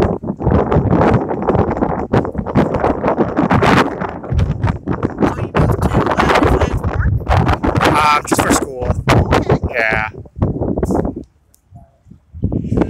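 Voices talking, blurred by wind buffeting the microphone, with a couple of short high wavering sounds about eight and ten seconds in. The sound drops away shortly before the end.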